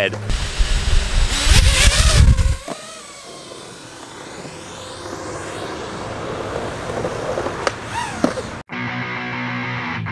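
Wind buffeting the microphone for about two and a half seconds, then quieter outdoor sound with faint whines sliding up and down. Near the end the sound cuts off suddenly and background music begins.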